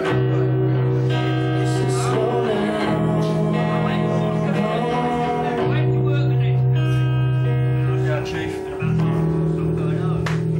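Acoustic guitar strumming sustained chords in a live grunge song, moving to a new chord about every three seconds, with a brief drop in level near the end.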